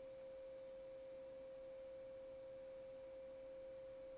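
Near silence apart from a faint, steady single-pitched electronic tone, a pure hum at one unchanging pitch.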